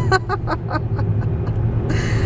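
A woman laughing in a quick run of short ha-ha pulses, about five a second, over the steady low hum of a car cabin on the road.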